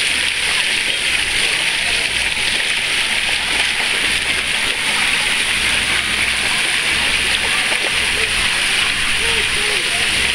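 Water spraying down onto a shallow pool, a steady rushing hiss with light splashing in the water.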